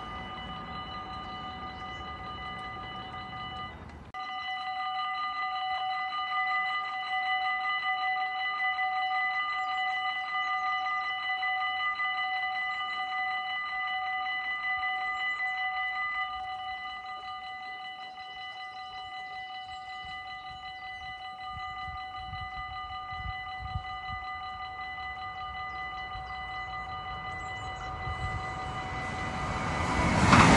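Dutch level-crossing warning bell ringing steadily while the barriers come down, breaking off for a moment about four seconds in, then ringing louder before dropping to a softer level about halfway once the barriers are closed. In the last seconds a low rumble of an approaching Arriva passenger train builds, and the train rushes past loud right at the end.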